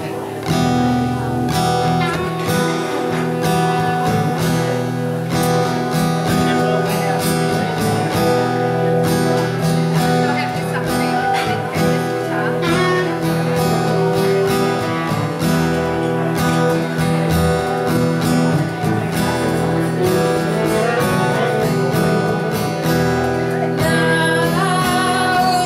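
Small live band playing an instrumental passage, led by a strummed acoustic guitar with bass and keyboard, all coming in together about half a second in.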